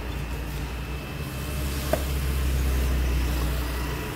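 Low rumble of a motor vehicle engine running close by on the road. It swells about a second and a half in and eases near the end, with a single sharp click about two seconds in.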